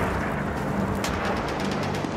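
Battle sounds: a continuous rumbling din of gunfire and explosions, with a sharp crack about a second in. Low steady music tones run underneath.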